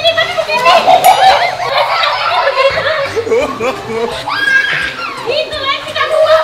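Children's and adults' voices calling out and laughing, no clear words, with high gliding child-like calls.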